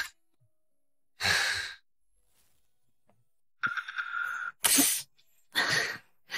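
Several short, breathy bursts of a person's voice with silence between them, the last ones coming close together near the end: a woman sneezing. A brief rasping sound with a steady whistling tone comes just before the last bursts.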